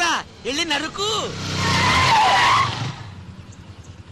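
Loud tyre screech of a skidding vehicle, starting a little over a second in and dying away before the three-second mark, with a low rumble under the squeal.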